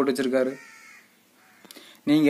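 A man's voice speaking Tamil, trailing off about half a second in, followed by a quiet pause with a few faint clicks before he speaks again.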